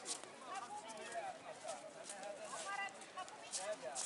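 Indistinct chatter of several passers-by talking at once on a busy pedestrian promenade, with no single voice clear.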